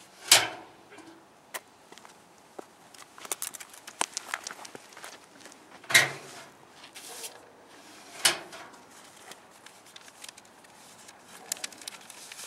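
A metal curbside mailbox and paper mail being handled: three sharp knocks, the first just after the start, then one about halfway and one a couple of seconds later, with light paper rustling and small clicks between them.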